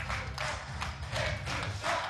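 Scattered clapping, a few irregular claps a second, applauding a point just scored in a three-cushion billiards match.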